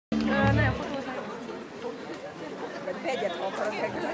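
A brief held chord from the live band at the very start, cut off under a second in, then audience chatter and voices between songs.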